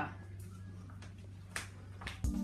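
Quiet room tone with a low steady hum, broken by a single sharp click about one and a half seconds in.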